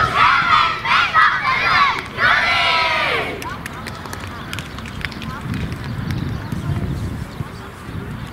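A boys' football team shouting a chant together in a huddle: three loud calls in unison in high children's voices, the last one the longest, ending about three seconds in.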